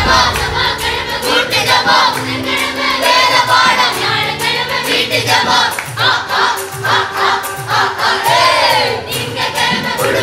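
Children's Sunday school choir singing a Tamil Christian song together, accompanied by an electronic keyboard holding sustained chords.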